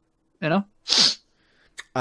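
A man's voice saying "you know?", then a brief sharp hiss-like burst of noise about a second in, and a small click near the end.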